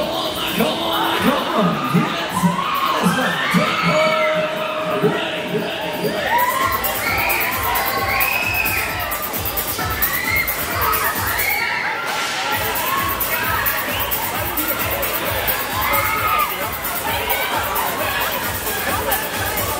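Riders on a Mack Musik Express ride screaming and whooping as the cars swing round at speed. A pulsing beat comes in underneath about six seconds in.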